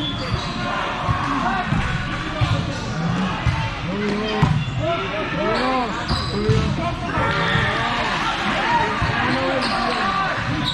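Volleyball hall ambience: players' and spectators' voices echoing in a large gym, with volleyballs being hit and bouncing on the hardwood courts.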